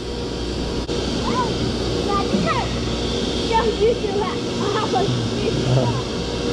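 Quiet, indistinct talking over a steady low hum and rumble.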